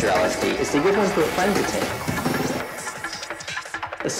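Hardtek mix in a breakdown: the kick drum drops out right at the start, leaving a voice over synth sounds. The sound thins out and gets quieter toward the end.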